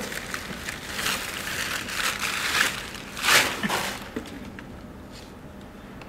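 Paper wrapping rustling and crinkling as a package is unwrapped, in several uneven swells, loudest about three seconds in, then dying down about four seconds in.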